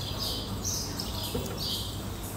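A small bird chirping over and over, short high notes about twice a second, over a low steady hum.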